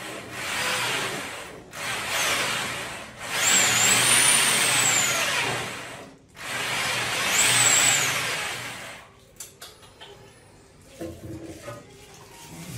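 Cordless drill spinning a drum-type drain-cleaning spring cable inside a clogged floor drain, run in four bursts with the motor's high whine rising and falling and the cable rubbing in the pipe. The machine stops about nine seconds in, followed by a few light clicks.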